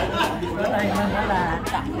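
Several people talking over one another: lively group chatter among diners at restaurant tables.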